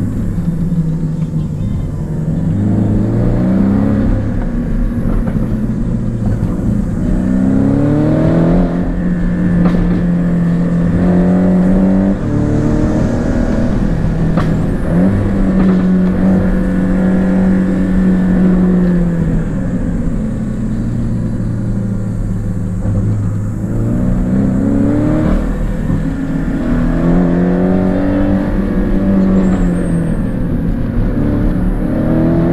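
Porsche 718 Cayman engine heard from inside the cabin, repeatedly pulling up in pitch through the gears with stepped jumps at the shifts, holding steady, then dropping away and climbing again.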